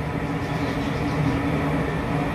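Steady low background rumble with a faint hum, unchanging throughout.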